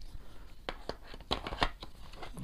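A series of sharp clicks and knocks as a black plastic Xiaomi Mijia S300 electric shaver is handled and set down into the insert of its box.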